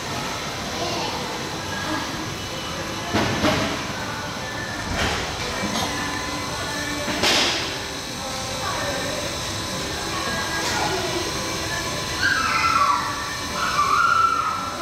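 Busy indoor children's play area: children's voices and shouts in the background over music, with a few sharp knocks.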